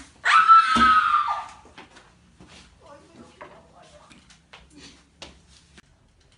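A person screams once, high-pitched and about a second long, just after the start. Then come only faint knocks and murmuring.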